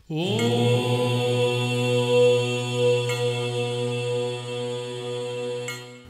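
A single long chanted note from a low man's voice, like a mantra syllable, that slides briefly up into pitch, holds it steady for about six seconds and fades near the end.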